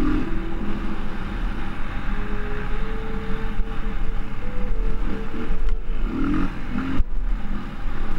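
Off-road motorcycle engine running at a fairly steady speed along a dirt trail, heard from a camera riding on the bike, with a rushing noise and low rumble underneath.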